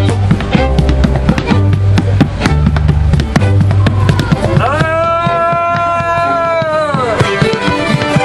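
Old-time string band music on fiddle and banjo, with a low bass line, and a clogger's boots tapping quick rhythmic steps on a plywood dance board. About five seconds in, a long held note rings out for roughly two and a half seconds.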